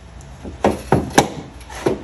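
Plastic fuse block being handled and set down against plywood beside the boat battery: about four light knocks with rubbing between them, the sharpest a little over a second in.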